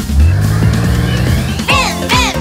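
Cartoon vehicle engine sound effect, a low rumble revving up with its pitch rising, over a children's song backing track. The singing comes back near the end.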